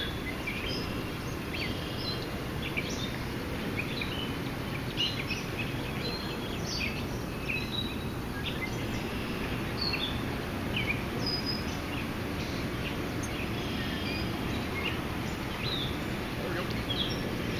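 Small birds chirping repeatedly, in short calls scattered throughout, over a steady low background rumble of outdoor noise.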